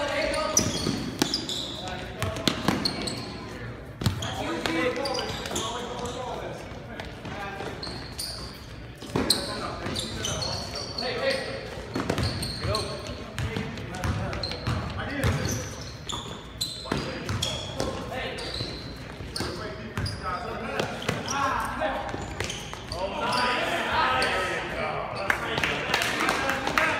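Basketball game in a gym: the ball bouncing on the hardwood court in sharp thuds, under the steady voices of players and spectators calling out, echoing in the large hall. The voices swell near the end.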